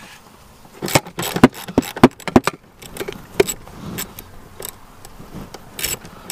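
Socket ratchet clicking in short irregular runs, with metal clinks, as it turns the anchor bolt of a car's seatbelt buckle. The densest clicking comes about a second in; scattered single clicks follow.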